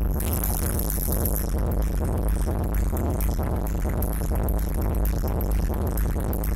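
Loud techno played live on hardware drum machines and synthesizers, a dense, steady mix with heavy bass and no break.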